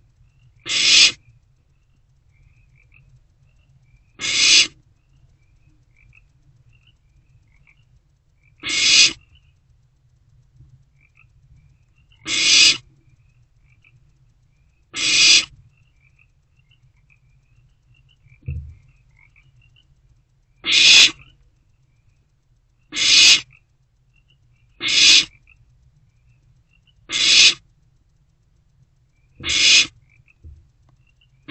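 Barn owl owlets giving their hissing food-begging calls. There are about ten separate half-second hisses at irregular intervals, and one short low thump a little past the middle.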